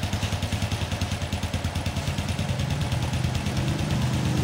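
Small four-stroke single-cylinder motorcycle engine idling low and steady with an even beat, running on a newly fitted carburetor. The idle is smooth and light, and its tone shifts slightly about halfway through.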